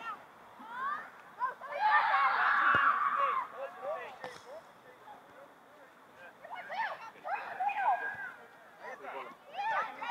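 Several voices shouting and calling at once across an open field, in bursts: a loud burst about two seconds in, another around seven seconds, and a third near the end, with quieter gaps between.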